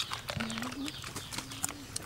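Several people eating snails from the shell: a quick run of sharp clicks and smacks from lips, shells and toothpicks. Two short hummed "mm" sounds come in, one near the start and one past the middle.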